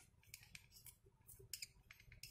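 Faint scratching of a felt-tip marker drawing short strokes in quick succession on a glossy sheet, over a low steady hum.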